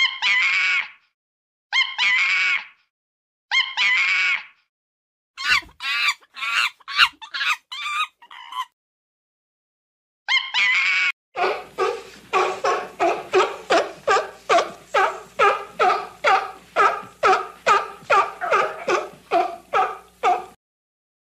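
Monkeys calling: three drawn-out calls of about a second each, then a quick run of short calls. After one more call, a steady string of calls follows, about two or three a second.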